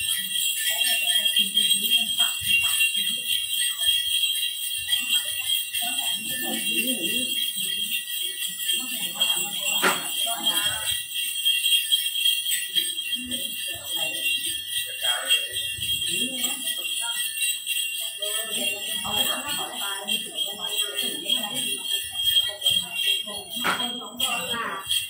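A bunch of small metal ritual bells (the xóc nhạc shaken in a Then ceremony) jingling continuously in a steady shaken rhythm, with low voices murmuring underneath.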